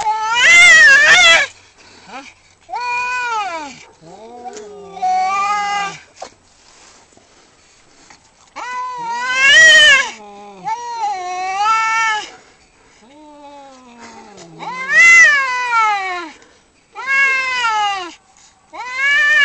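Domestic cats caterwauling during a face-off: a string of long, drawn-out yowls, each rising and then falling in pitch, about eight in all. The loudest come right at the start, about ten seconds in and about fifteen seconds in.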